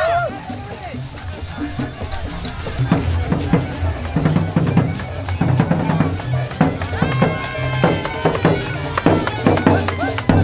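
Street-band drums and percussion playing a Colombian folk rhythm, building up about three seconds in. A held, steady note sounds over the drumming near the end.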